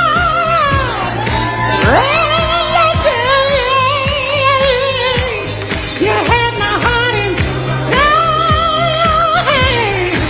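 Recorded soul/jazz song: a singer holds several long notes with vibrato, about a second or two each, over a band with a steady bass line, with no clear words.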